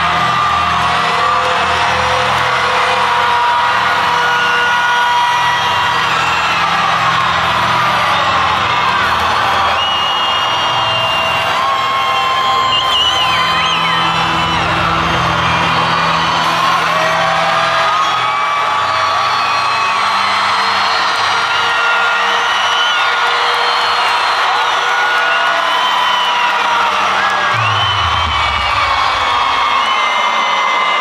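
Large concert crowd screaming and cheering over loud music from the stage sound system, with sustained low bass notes underneath.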